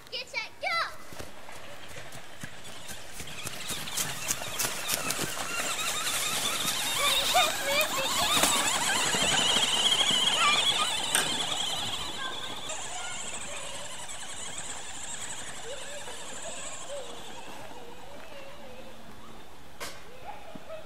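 Grave Digger remote-control monster truck driving over sandy dirt, its motor whining and wavering with the throttle. It is loudest in the middle as it runs close by, then fades to a lower steady noise.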